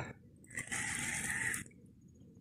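Spinning fishing reel whirring for about a second, starting and stopping abruptly, while a hooked fish is being played.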